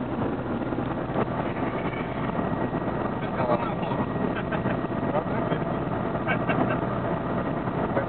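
Steady road and engine noise heard from inside a moving car's cabin, with voices talking over it now and then.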